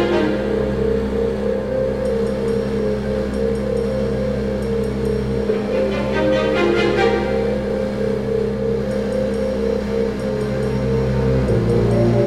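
Background music: a sustained low drone under a quick, evenly repeating figure of notes, with a dark, suspenseful feel.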